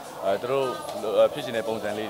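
Men talking in conversation, with the voice rising and falling in pitch.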